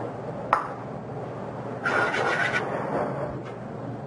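Diced vegetables sautéing in olive oil in a steel pan, a steady sizzle. There is a sharp click about half a second in and a brief squeaky scrape around two seconds in.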